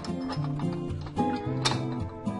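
Background music with held, plucked notes over a stepping bass line, and a single sharp click about one and a half seconds in.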